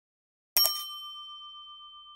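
Notification-bell 'ding' sound effect: one bell strike about half a second in, its ringing fading slowly.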